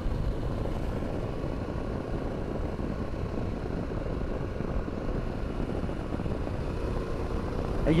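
Steady wind rush and road noise on the microphone of a Harley-Davidson Pan America motorcycle cruising at about 60 mph, with no engine note standing out.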